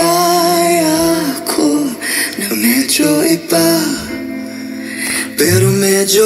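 A live pop song duet: a man and a woman singing long held notes with band accompaniment beneath.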